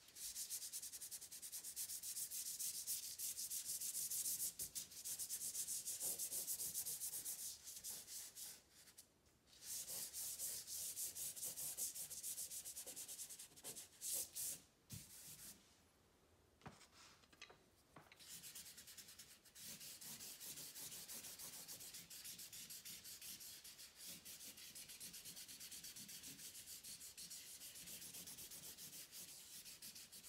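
Charcoal stick scratching across paper in quick back-and-forth shading strokes, in runs of several seconds broken by short pauses. Past the middle the rubbing turns quieter and steadier.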